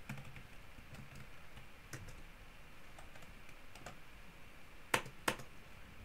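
Typing on a computer keyboard: faint, irregular keystrokes, with two louder key strikes about five seconds in.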